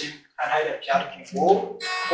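A young man speaking in short phrases, with a brief pause just after the start.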